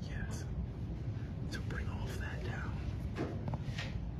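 A man's quiet, whispered speech close by, over a steady low rumble.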